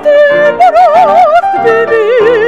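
Classical soprano singing with a wide, even vibrato, accompanied by a bowed string instrument and a grand piano. She sings a held note, then a slightly higher one.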